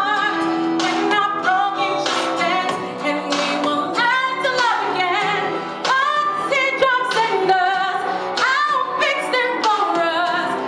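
A woman singing solo into a handheld microphone, holding and sliding between notes with a wavering, decorated melody, over a steady accompaniment underneath.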